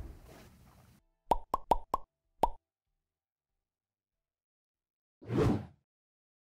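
Outro sound effect: five quick pops within about a second, then after nearly three seconds of silence a short, deep whoosh.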